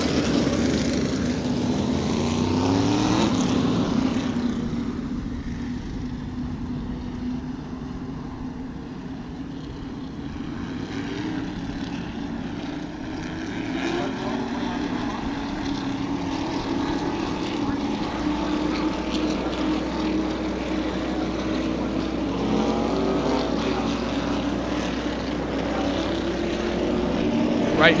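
A pack of modified race cars running slowly at pace-lap speed, a steady engine drone that swells and fades as the field goes by. It is loudest at the start and near the end, with the pitch rising and falling as cars pass.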